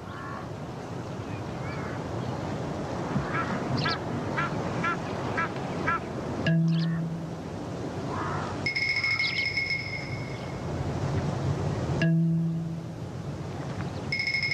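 Birds calling over a dense, steady background of natural ambience, with a quick run of about six short repeated calls a little before the middle. Low held notes come in twice, about six and a half and twelve seconds in.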